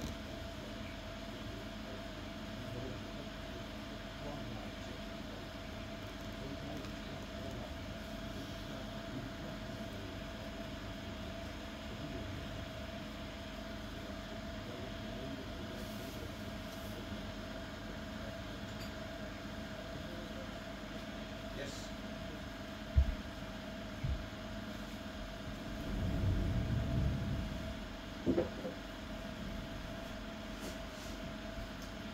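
A steady hum with a constant mid-pitched tone and a low rumble beneath it, from the running plasma chamber apparatus. Near the end come two short knocks, a brief swell of low rumble and a click.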